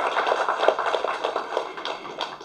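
Audience applause, many hands clapping at once, dying away toward the end.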